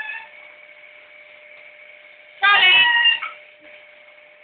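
Blue-and-gold macaw giving one loud, pitched call of under a second about two and a half seconds in, after the tail end of an earlier call at the very start.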